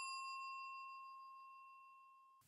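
A single bell-like ding ringing out and fading steadily; its highest overtones die away first, leaving one clear tone.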